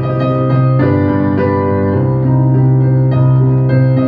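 Piano sound from a digital stage keyboard, played as slow sustained chords over a held bass note, the chords changing about once a second.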